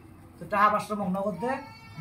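A person's voice: short speech-like sounds from about half a second in, ending in a drawn-out rising tone.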